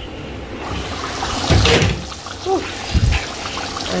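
Liquid bubbling at the boil in a pot on the stove, with a few dull knocks of cookware about one and a half and three seconds in.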